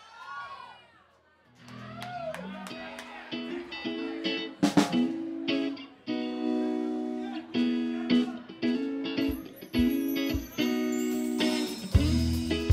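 Electric guitar starting a rock song alone: single picked notes at first, settling into a repeated pattern of ringing chords, with a few low thumps coming in near the end.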